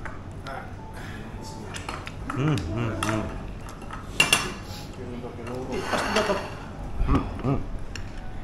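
Tableware clattering at a meal: chopsticks and utensils clicking against plates and bowls, with one sharp clink about four seconds in and low voices now and then.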